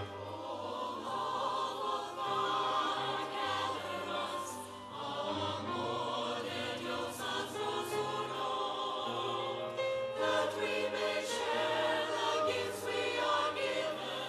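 Church choir singing a hymn over sustained low instrumental accompaniment, the sung notes held and changing in phrases.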